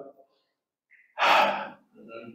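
A man's quick, audible breath into a close handheld microphone, a single half-second rush of air about a second in.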